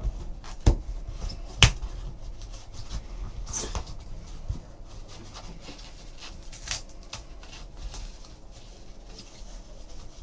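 Hands opening a trading-card box and its packaging: soft rustling and rubbing, with two sharp clicks in the first two seconds and a few lighter ticks later.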